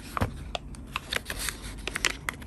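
Paper and card being handled in a handmade paper file: an irregular run of small, sharp rustles and taps, several a second, as cards and paper pieces are moved and slid against one another.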